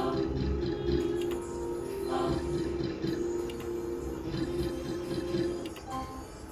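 Book of Ra Deluxe slot machine's free-spin music playing steadily, with short chiming notes near the start and about two seconds in.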